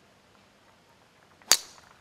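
A golf club striking the ball off the tee: one sharp, loud crack about one and a half seconds in, with a short ringing tail, after a hushed moment during the swing.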